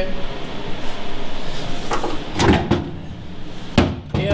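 Steady background noise with a brief stretch of voice a little past halfway and a single sharp knock near the end.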